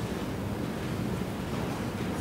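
Steady background noise with no speech: a low rumble and an even hiss, the room tone of the courtroom microphone feed.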